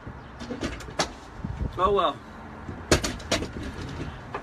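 A few sharp knocks and clicks, one about a second in and two near the end, with a man briefly saying "oh well" between them.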